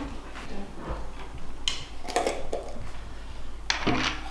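Kitchen handling noises: a few short knocks and clatters of a frying pan being picked up and carried, with a faint voice briefly in the background.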